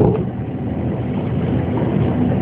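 Steady background noise with no distinct events, heard in a pause between spoken sentences.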